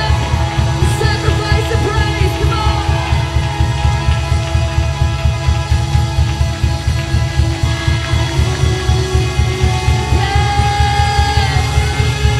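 Live church worship band (electric guitar, bass guitar, keyboard and drums) playing with a steady pulsing beat, with singing over it and a long held note near the end.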